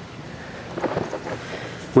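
Faint handling sounds of PVC pipe sections being fitted together, a few soft scrapes and knocks about a second in, over a low, steady outdoor background.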